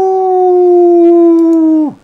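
A single long howl-like note, held almost steady for nearly two seconds and dipping slightly in pitch before it stops.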